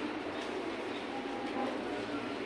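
Steady, low background noise of the hall, an even hum and hiss with no voice, in a pause of the recitation.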